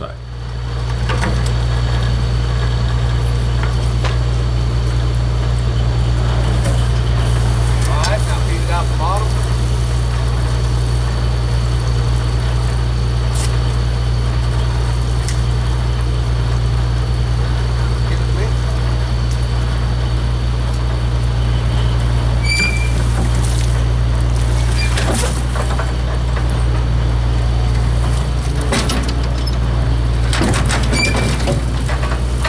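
Well-drilling rig's engine running at a steady low drone, with a few sharp metal knocks and clanks as the steel mud pit is lifted back onto the rig.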